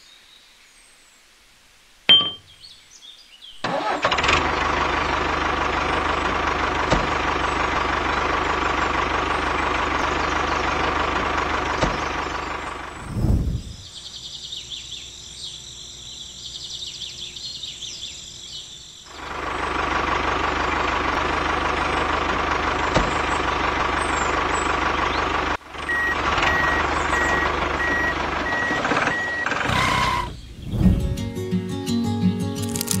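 Small motor of a motorised toy tractor running steadily in two long stretches, from about four seconds in to twelve and again from about nineteen seconds on, with a quieter gap between. Near the end a short beep repeats about twice a second.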